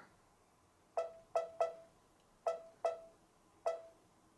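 Touchscreen key beeps of a Brother Luminaire embroidery machine as the arrow keys are tapped: six short beeps of the same pitch, three in quick succession about a second in, two more about a second later, and a single one near the end.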